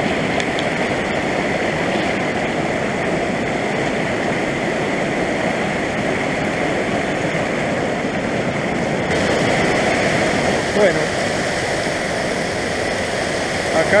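Fast mountain stream rushing over boulders in whitewater: a loud, steady rush of water.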